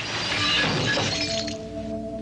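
A crash of shattering glass that dies away over about a second and a half. A sustained, ringing music chord comes in under it about a second in.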